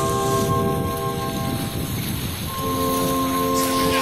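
Background music of sustained, bell-like held chords: the first chord fades out around the middle and a new one comes in about two and a half seconds in, over a steady rushing noise.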